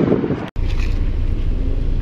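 Wind buffeting the microphone, then, after a sudden cut, the turbocharged 2.0-litre four-cylinder of a Stage 3+ MK7 VW Golf R idling with a steady low rumble.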